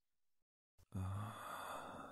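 A man's long breathy sigh, beginning about a second in after a faint click, with a brief low voiced start, then fading away.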